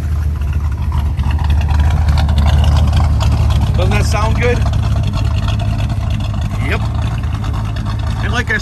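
Chevrolet 350 small-block V8 idling, heard close to its exhaust tailpipe: a steady low engine note.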